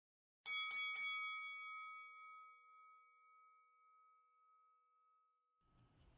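Boxing ring bell struck three times in quick succession, about a quarter second apart, then ringing on in one long fading tone. Faint room noise fades in near the end.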